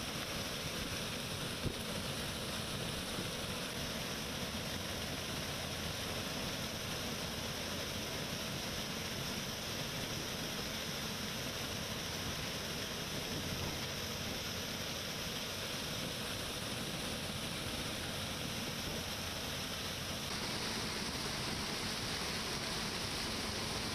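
A steady, even rushing noise from a combine harvester running, with a slight shift in tone near the end.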